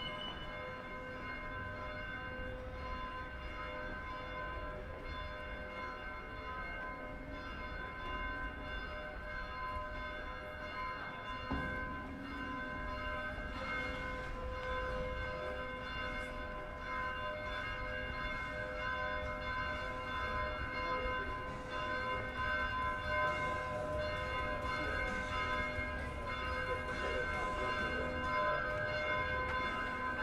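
Church bells ringing continuously, their tones sustained and overlapping, growing a little louder toward the end, over low street noise.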